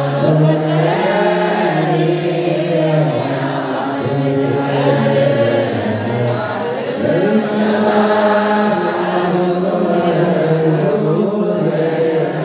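Eritrean Orthodox Tewahedo liturgical chant sung by a group of low voices in unison, slow and melismatic, with long held notes that move from pitch to pitch.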